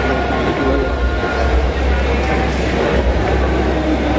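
A steady low rumble under a hubbub of indistinct voices.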